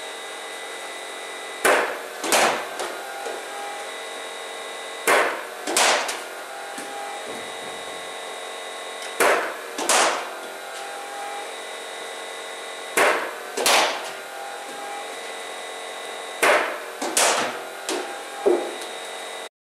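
BOLA Junior bowling machine humming steadily with its wheels spinning. Five times, about every four seconds, comes a pair of sharp knocks: a ball fired from the machine, then the bat striking it, with a few smaller knocks of the ball landing after some deliveries.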